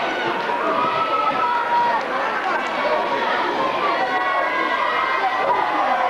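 Wrestling audience in a hall: many voices overlapping, chattering and calling out.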